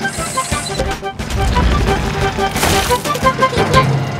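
Cartoon background music, a melody of short plucked notes, over a low rumbling sound effect as the crane lifts the house.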